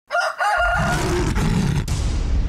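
Intro sound effects: a rooster crowing for about a second, with a low rumble coming in about half a second in and continuing under it.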